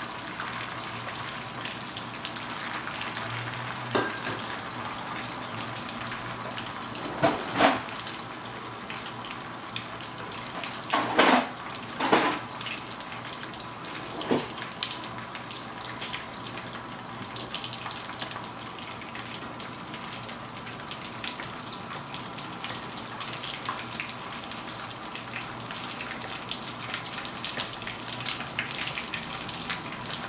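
Gond (edible gum) frying in hot ghee in a nonstick pan: a steady sizzle and bubbling. A few louder knocks and scrapes of the spatula in the pan come at about 4, 7, 11 to 12 and 14 seconds in.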